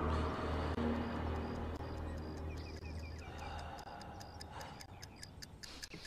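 A low music drone fades out over the first few seconds, then a clock ticks quietly and evenly. A short run of faint high chirps comes about two and a half seconds in.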